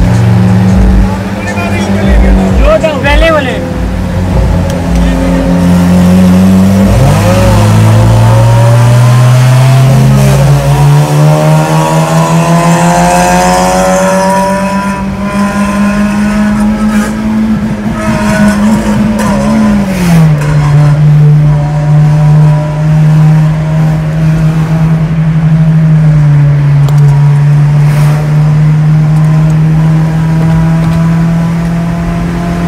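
Honda Civic engine heard from inside the cabin under hard acceleration: the revs climb steadily for long stretches, then drop suddenly, once about a third of the way in and once about two-thirds of the way in.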